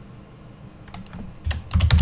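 Keystrokes on a computer keyboard: a few scattered clicks about a second in, then a quick run of louder key presses near the end as text is typed and deleted in a search box.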